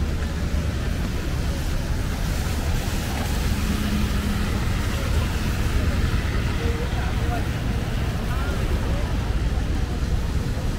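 Steady low rumble of city street noise, traffic and wind, with faint distant voices.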